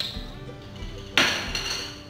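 Soft background music with a pulsing bass. About a second in there is one sharp clink of a small ceramic plate and spoon being set down on a glass tabletop.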